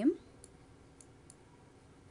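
A few faint, sparse clicks of a computer mouse over a quiet background, right after the last syllable of a spoken word.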